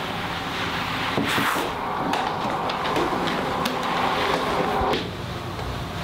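Cloth rag rubbing over a concrete countertop, wiping off excess beeswax, a steady scrubbing hiss with small clicks that eases a little about five seconds in.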